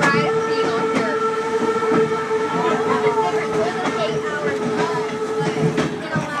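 A train running along the track, heard from inside its cab: a steady droning tone over a continuous rumble and rattle.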